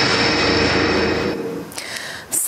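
Closing sting of a TV news programme's title music: a sustained noisy wash with a couple of held tones, fading away about a second and a half in.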